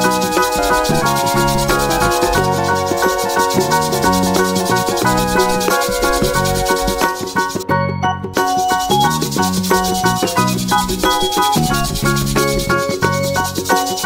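Felt-tip marker rubbing and scratching on paper as it colours in, with a short break about halfway through. Upbeat children's nursery-rhyme music plays steadily under it.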